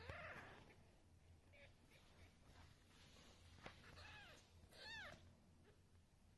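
One-week-old Ragdoll kittens mewing faintly: three short, high mews that rise and fall in pitch, one at the start and two close together about four and five seconds in.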